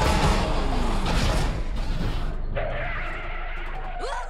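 Film sound effect of a jet airliner's engines, loud as it passes low with the pitch falling. From about two seconds in it turns to a duller rumble with tyres skidding as the plane touches down on the runway.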